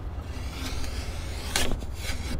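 A T-handled anchor pin being pushed down beside a fishing boat to stake it in place: scraping, then one sharp clunk about one and a half seconds in, over a steady low rumble.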